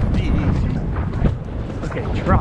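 Dense rumbling wind and movement noise on a rider-worn camera's microphone while a horse moves along a leaf-litter trail, with a few irregular thuds.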